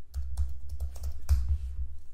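Typing on a computer keyboard: a run of irregularly spaced key clicks.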